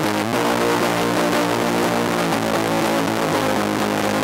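Fender Jaguar electric guitar played through an Acorn Amps Bweep Fuzz pedal set to full fuzz and a JHS Colour Box V2 preamp: heavily fuzzed, sustained notes and chords.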